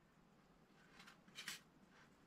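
Near silence, with two faint, short clicks about a second and a second and a half in: small steel tension wrenches being handled on a wooden workbench.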